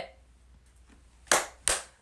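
Two sharp claps, about a third of a second apart, near the end.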